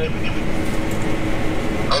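A combine running, heard from inside its cab as a steady machine hum and rumble.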